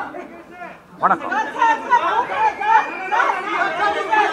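Several people talking over one another, after a brief lull at the start.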